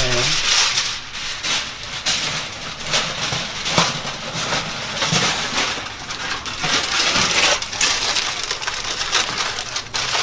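Aluminium foil crinkling and crumpling as it is wrapped and pressed tightly around a leg of lamb, a continuous run of crackly rustles.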